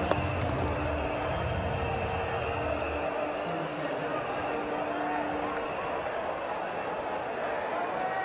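Cricket ground crowd ambience heard through a television broadcast: a steady wash of spectator noise while the ball runs away to the boundary.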